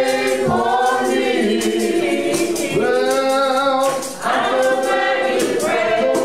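Small mixed group of men and women singing a gospel song together into handheld microphones, holding long notes with brief breaths between phrases.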